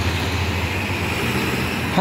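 A passing car's engine and tyre noise, building as it approaches and then holding steady.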